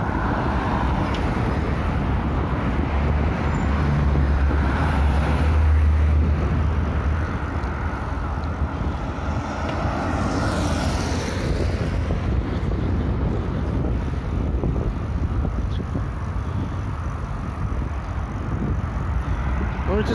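Street traffic noise heard from a moving bicycle, with wind buffeting the microphone most strongly in the first few seconds. A vehicle swishes past about halfway through.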